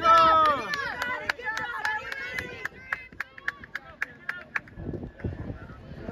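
Spectators cheering on runners: a loud shouted "go!" at the start, then more voices calling out for a couple of seconds, with scattered sharp claps throughout that thin out toward the end.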